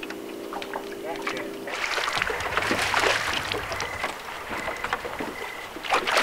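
A hooked smallmouth bass splashing and thrashing at the surface beside the boat, the splashing starting about two seconds in, with a low steady hum before it.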